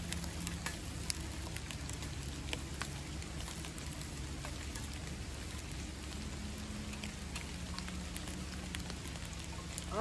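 Small fish fillets sizzling in a pot over a camp stove: a steady hiss with scattered crackles and ticks.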